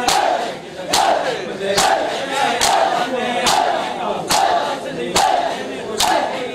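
A congregation of men beating their chests in unison (Shia matam), a sharp slap a little more than once a second, with the crowd shouting between strokes.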